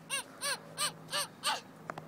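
A bird calling in a quick, even series of short calls, each rising and falling in pitch, about three a second.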